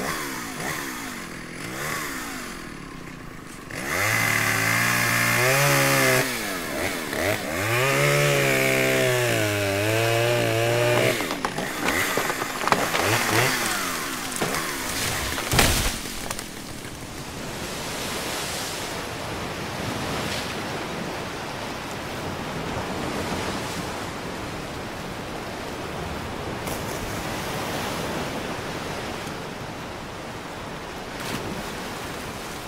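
A chainsaw revving and cutting, its pitch dipping and recovering under load in two long passes. A single sharp crack follows, then a steady rushing noise.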